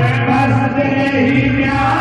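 Hindi devotional bhajan sung live with musical backing, the voice holding long, chant-like notes.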